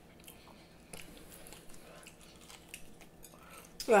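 Soft chewing and mouth sounds of people eating fried prawns, with a few faint clicks and one sharper click about a second in. A voice starts right at the end.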